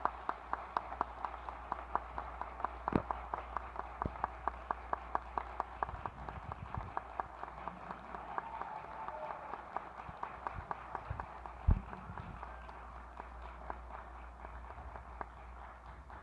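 Audience applauding, with one set of claps close by standing out in an even beat over the crowd's clapping. A single low thump about twelve seconds in; the applause dies away at the very end.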